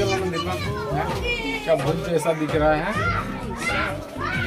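People talking: conversational speech throughout, with lively, high-pitched voices.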